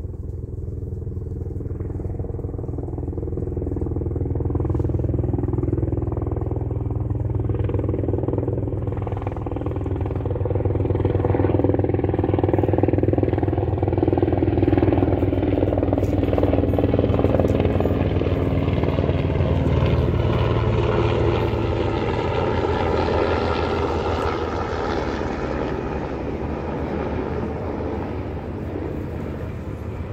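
A steady engine drone that slowly grows louder, peaks around the middle, then gradually fades.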